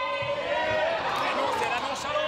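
Basketball game sound in a sports hall: several voices of players and spectators calling out over one another during play.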